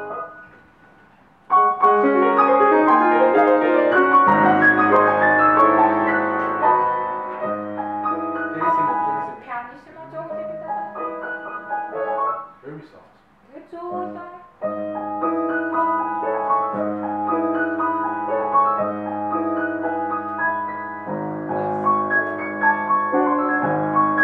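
A grand piano being played: after a brief quiet moment it starts about a second and a half in with full chords, breaks off and thins out for a few seconds around the middle, then resumes steadily.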